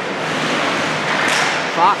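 Hockey rink ambience during play: a steady wash of arena and crowd noise with faint voices, which swells briefly about a second in. A man's voice starts speaking at the end.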